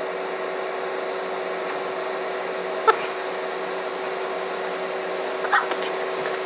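A steady machine whir with a fixed-pitch hum under an even rushing noise, like a small electric motor running. There is one faint click about three seconds in.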